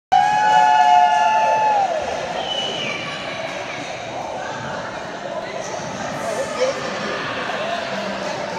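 A loud, long, high whoop from a wedding guest that slides down at the end, then a shorter high call, followed by a crowd of guests talking and cheering.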